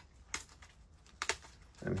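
A few light, sharp clicks and taps from handling trading card packs, with a word of speech starting near the end.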